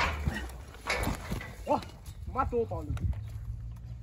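A few short wordless vocal cries or groans, with scattered sharp knocks and scuffling at the start and about a second in.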